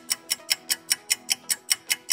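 Fast clock-ticking sound effect, about five even ticks a second, over soft background music.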